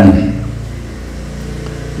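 A steady low hum in a pause between a man's spoken phrases, after the end of a phrase fades out at the start.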